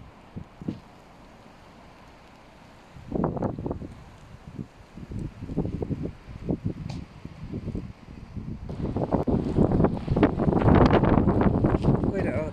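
Snowstorm wind gusting against a mobile phone's microphone in uneven rumbling surges. It is fairly calm for the first few seconds, then comes in gusts that grow stronger and nearly continuous near the end.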